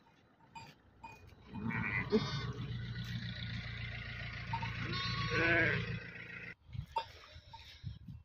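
Kangal sheep bleating: a call about two seconds in and a wavering one around five and a half seconds in, over a low steady rumble.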